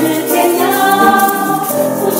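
Mixed choir of men's and women's voices singing in Chinese, with several parts holding chords that move from one note to the next about every half second.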